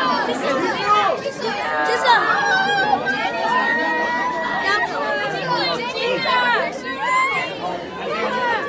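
A crowd of fans talking and calling out all at once: many overlapping high-pitched voices with no clear words, and a few long held calls partway through.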